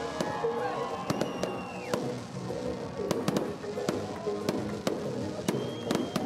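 Aerial fireworks going off: a string of irregular sharp bangs and crackles, with music and voices underneath.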